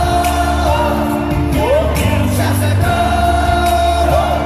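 Live K-pop concert music played loud over an arena sound system: sung vocals, some held and some gliding, over a steady bass line and beat.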